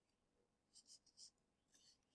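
Near silence, broken by a few faint, short paper crinkles from a hundred-dollar bill being folded by hand, starting a little before halfway.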